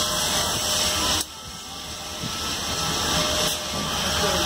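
Steady hiss of steam from the standing Union Pacific 4014 'Big Boy' steam locomotive. It drops sharply about a second in, then builds back up.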